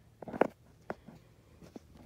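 Handling noise while things are moved about: a short burst of rustling and clicking about half a second in, followed by a single sharp click and a fainter tick near the end.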